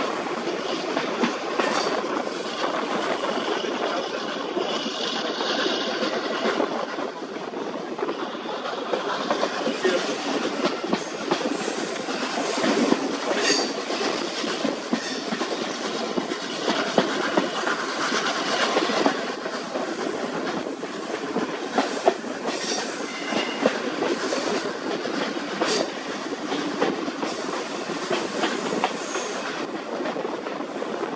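Railway carriage running along the line: a steady rumble with the wheels clattering over the rail joints.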